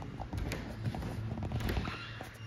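Irregular light knocks and rattles of a lightweight city electric bike being gripped by its top tube and lifted one-handed.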